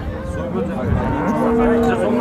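Cattle mooing: one long, low moo held at a steady pitch, growing stronger after about a second.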